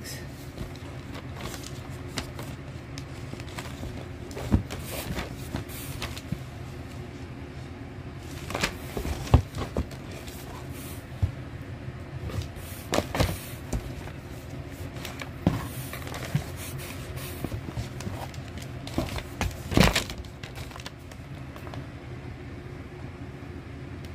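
Paper gift bags being handled and shifted: intermittent rustles and light knocks, a handful of times, over a steady low hum.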